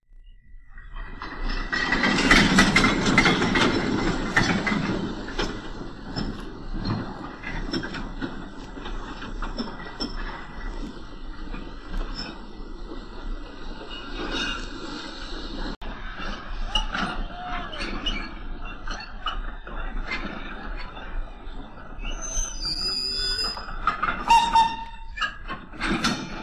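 Goods train of wagons running slowly along the track, a steady rumble with clanks and clicks, loudest in the first few seconds, with a brief high wheel squeal near the end.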